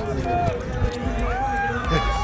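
Several voices of spectators and players talking in the background, over a low rumble from a body-worn microphone on a moving player.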